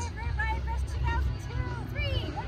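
Quiet voices talking in short phrases over a steady low rumble.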